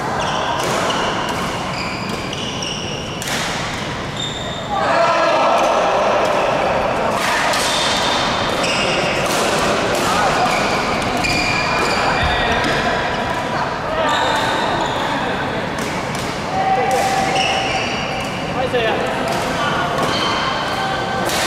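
Badminton rally: sharp racket strikes on the shuttlecock, repeated through the rally, with shoes squeaking briefly on the court floor, over steady background chatter in the hall.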